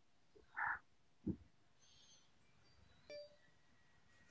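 Quiet call audio with three short, faint sounds: a brief mid-pitched sound about half a second in, a low thump a little later, and a click about three seconds in.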